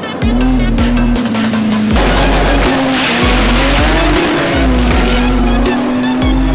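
Front-wheel-drive drag car's engine revving with its tyres squealing, loudest about two to four seconds in, under background electronic music with a steady beat.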